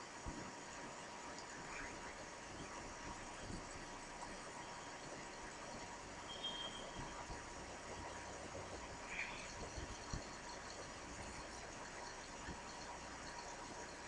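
Quiet room tone: a faint steady hiss with a thin steady tone, broken only by a few small soft clicks and a brief faint chirp.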